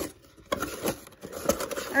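Hands handling a cardboard mailer box and a printed paper card: a tap near the start, then a run of light rustles, taps and scrapes as the card is lifted out.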